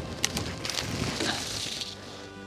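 A steady rustling hiss with a few sharp clicks near the start, over faint background music.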